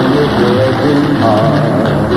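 A 1940s dance-band record playing over AM radio: orchestra and band carrying a melodic passage, with the slight hiss of a distant station.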